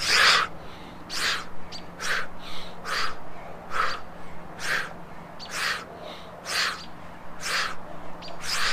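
A man's forceful breaths during a set of one-legged push-ups: one sharp, breathy exhale with each rep, about one a second in an even rhythm.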